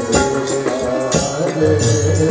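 Devotional kirtan music with no words: a reed-keyboard melody over jingling hand percussion and drum beats.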